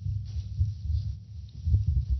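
Irregular low thumps and rumbling from table microphones being handled and bumped, with a few faint clicks.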